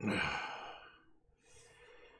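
A man's long, heavy sigh, loudest at the start and trailing off over about a second, followed by a softer breath.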